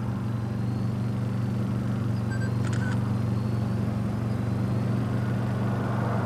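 A vehicle engine idling: a steady, unchanging low hum, with a faint brief chirp about halfway through.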